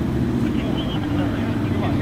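Street traffic: car engines running steadily close by as vehicles idle and creep through an intersection, with voices faintly in the background.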